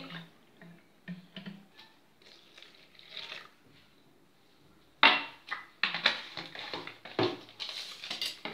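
Drinking glasses and a ceramic mixing bowl knocking and clinking on a tiled counter as a glass of milk is emptied into the bowl and set down. A few light taps come first, then a sharp clack about five seconds in, followed by a run of clinks and knocks.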